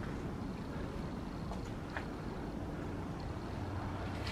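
Quiet, steady background rumble with a faint high steady tone above it, and a single faint click about two seconds in.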